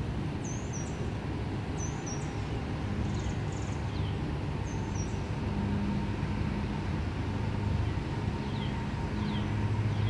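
Outdoor ambience: a steady low hum that swells a little now and then, with a bird giving a short, high, falling chirp a few times, mostly in the first half, and fainter chirps later.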